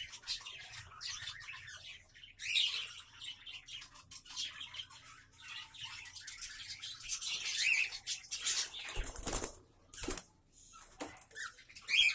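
Cockatiels chirping and calling, a busy run of short high chirps, with a short loud rustle about nine seconds in.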